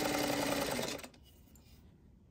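Singer sewing machine running at a steady stitching speed, then stopping sharply about a second in.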